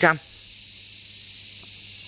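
Steady high-pitched hiss with two faint thin high tones running through it.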